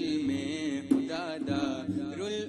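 A voice singing a slow, ornamented chant, its pitch wavering and gliding from note to note, with a sharp hit about a second in.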